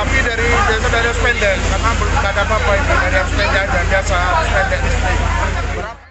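A man speaking over crowd chatter, with a steady low engine rumble underneath.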